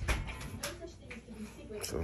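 Faint voices with a sharp knock at the start and a couple of softer knocks later.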